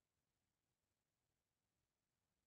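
Near silence: only a faint, steady noise floor.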